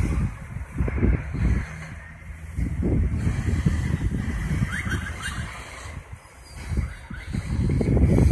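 Wind buffeting a phone microphone in uneven low gusts, over outdoor street noise from traffic below.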